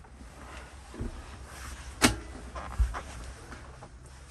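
Rustling and movement inside a truck cab as a phone camera is carried around, with a sharp click about two seconds in and a softer knock shortly after, over a low steady rumble.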